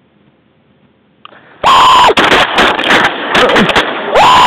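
Faint marsh background, a small click, then a loud held cry and a rapid volley of shotgun blasts, several shots in about two seconds, loud enough to overload the microphone.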